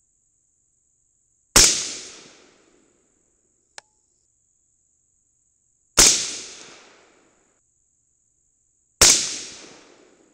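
An AR-15-style rifle chambered in 22 Nosler fires three shots a few seconds apart, each followed by an echo that fades over about a second. A faint click comes between the first and second shots, and a steady high insect trill runs underneath.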